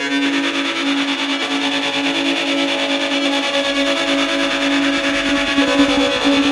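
Instrumental post-rock: a dense, sustained wash of effects-processed, distorted electric guitar and keyboards over a held note, with a deep low note joining about four seconds in.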